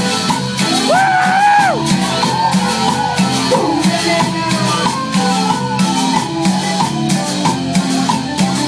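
Live cumbia band playing: a steady percussion and shaker groove over bass and keyboard, with one long held high note about a second in.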